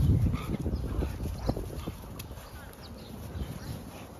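Dogs' paws scuffling and pattering on dry leaves and dead grass as two dogs play-wrestle and chase, loudest in the first second and a half, over a low rumble.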